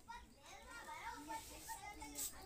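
Faint voices talking in the background, with no clear sound from the mortar work.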